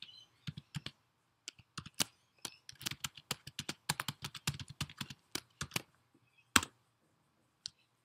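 Typing on a computer keyboard: a quick, irregular run of keystrokes, then a single louder keystroke about six and a half seconds in.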